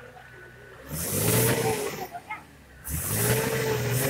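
Minibus engine revved hard twice, each rev about a second long, rising and then falling in pitch, under load as the bus strains to climb a muddy, rutted dirt track.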